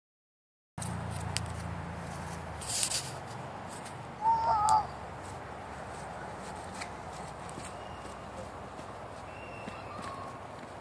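Outdoor background noise with a brief rustle, then a short high wavering call about four seconds in.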